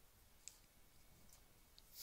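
Near silence, with a faint small click about half a second in and a couple of fainter ticks later.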